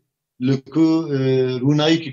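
A man's speaking voice drawing one syllable out into a long, steady vowel for about a second, then carrying on talking near the end.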